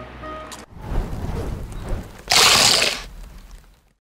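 Doritos tortilla chips crunching as they are bitten and chewed, with a louder burst of crunch lasting under a second about two and a half seconds in.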